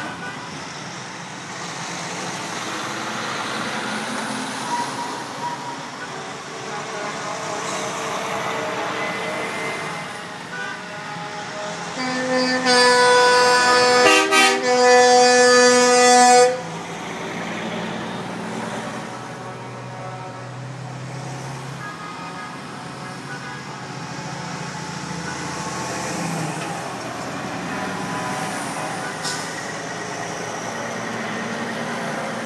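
A semi truck's air horn blasts loudly for about four seconds, starting about twelve seconds in, with a brief break midway and a sudden cutoff. Under it, the diesel engines of passing big rigs run steadily.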